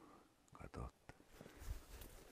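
Faint rustling and a few soft knocks from a person moving in brush, with a louder rustle near the end.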